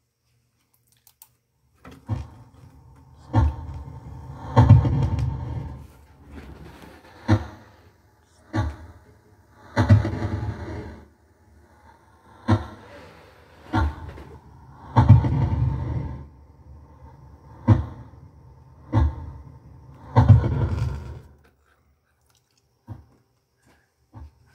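A short EVP recording looped four times through computer speakers, slowed down and deep. Each pass holds three muffled low bursts about a second and a half apart, the stretch heard as a voice saying "don't stop talking to me".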